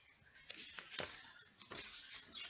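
Paper and clear plastic packaging being handled, rustling, with a few light crinkles and clicks.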